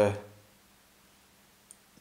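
A man's drawn-out "uh" trailing off, then near-silent room tone with one faint short click just before he speaks again.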